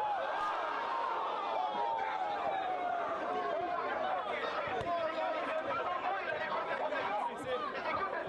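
Large crowd of spectators around an outdoor basketball court chattering and calling out, many voices overlapping at a steady level.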